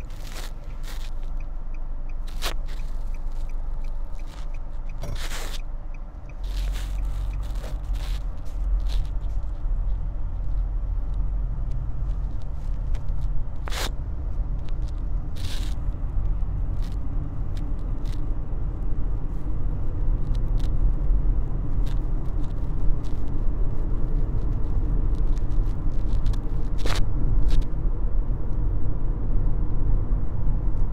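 Interior noise of a Nissan sedan on the move: a steady low engine and road rumble that grows louder about six seconds in as the car picks up speed, with a few scattered clicks.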